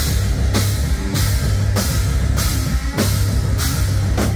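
Live heavy metal band playing loud: electric guitars and bass over a drum kit, with cymbal hits recurring about every two-thirds of a second, and no singing in this stretch.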